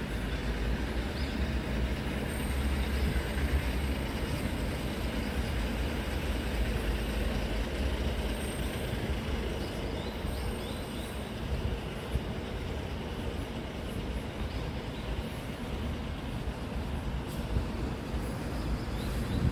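Steady low rumble of traffic on the elevated overpass overhead, a little louder in the first half, with a few faint high chirps.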